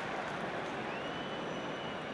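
Steady crowd noise from a football stadium crowd, with a faint, thin, high whistle that comes in about a second in and is held.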